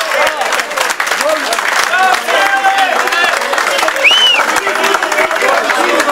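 A group of people clapping and applauding, with several men's voices talking and calling out over the clapping.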